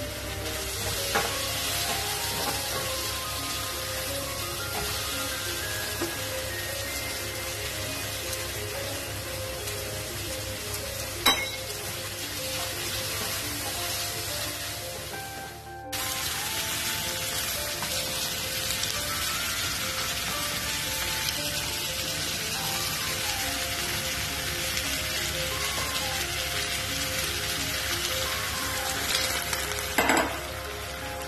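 Chicken thighs and sliced mushrooms sizzling in a non-stick frying pan on a gas burner, a steady frying hiss that grows louder from about halfway, with one sharp click about eleven seconds in.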